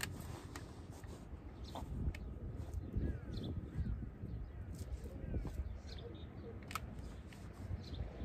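Outdoor ambience: wind rumbling on the microphone, with scattered light clicks and a few faint bird chirps about three seconds in.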